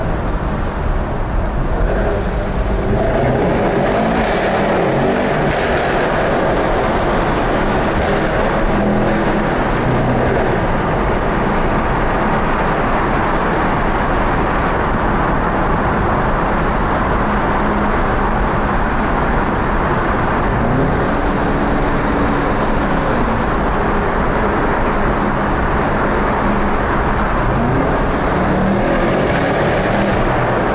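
Mercedes-AMG E63 S 4Matic+ twin-turbo V8 driving, heard from inside the cabin with steady road and tyre noise in a tunnel. The engine note rises under acceleration a few seconds in and again about two-thirds of the way through.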